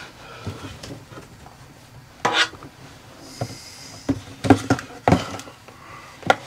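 Handling knocks as a plastic single-serve coffee maker and its cardboard box are moved and set down on a desk: a few separate thumps, one about two seconds in and the two loudest near the end.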